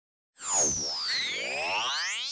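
Synthesized title-card stinger: after a moment of silence, a swirl of electronic tones sweeps in, some gliding down in pitch and others climbing.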